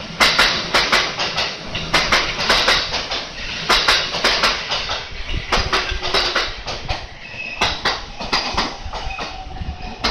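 A train running over rail joints and points close by: an irregular clatter of sharp wheel knocks, a few a second, with brief, faint high wheel squeals.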